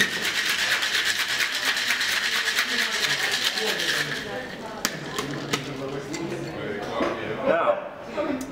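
Ice rattling hard and fast inside a cocktail shaker, shaken for about four seconds, then stopping. A few sharp clicks follow.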